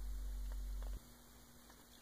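Low electrical mains hum for about the first second, stopping suddenly, then near silence.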